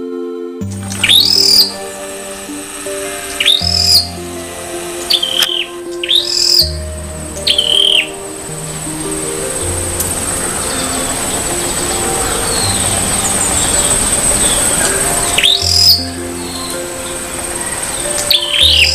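A small songbird giving loud, sharp calls that sweep downward in pitch. They come singly, a second or two apart, with a long gap in the middle before one more call near the end.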